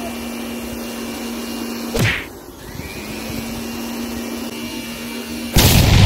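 Air blower droning steadily as it inflates a large latex balloon through a pipe, with a short sharp knock about two seconds in, after which the drone drops out for a second. Near the end the over-inflated balloon bursts with a loud bang.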